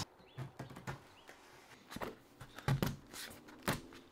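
Small hammer lightly tapping veneer pins into a wooden glazing batten, a handful of short, irregularly spaced taps, the loudest in the second half.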